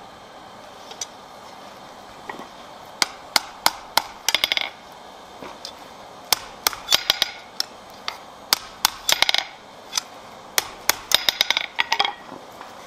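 Blacksmith's hammer striking a hot iron bar on the anvil to curl its end: sharp blows beginning about three seconds in, coming in quick groups with short pauses between.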